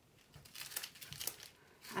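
Crinkling and rustling of a plastic-film-covered diamond painting canvas as it is handled and shifted, in a few short bursts in the first half of the clip.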